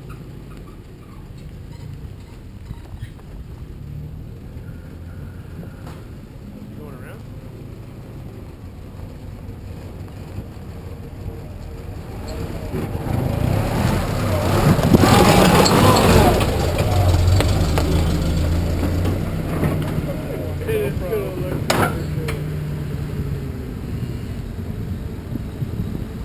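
Old Jeep's engine running at low revs as it crawls up a rock ledge and passes directly over the microphone. The rumble builds, is loudest about halfway through together with a rush of noise from the tyres and underside on the rock, then eases back down.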